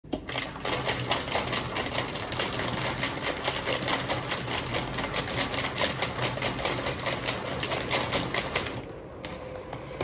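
Honeycomb kraft paper cushioning machine running as expanded paper feeds out of its slot, a rapid, even clicking over a low motor hum. It stops about a second before the end.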